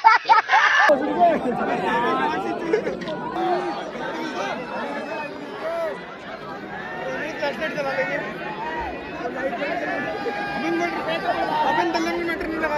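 Crowd chatter: many people talking at once in a large audience, with no music playing.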